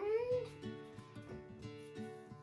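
Background music with plucked guitar notes comes in and plays steadily. At the very start, a short voice-like sound slides up and then down in pitch.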